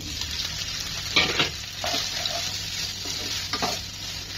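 Soaked soya chunks sizzling as they fry in hot mustard oil in a pan, with a spatula stirring and scraping them; the loudest stroke comes about a second in.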